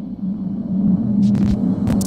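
Opening of an electronic logo sting: a low, steady drone that swells in loudness over the first second, with two short glitchy swishes in the second half.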